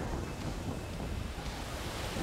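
Steady rushing noise of wind and ocean surf.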